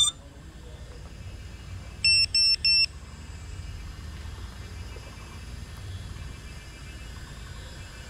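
Three short electronic beeps in quick succession about two seconds in, over a low steady rumble.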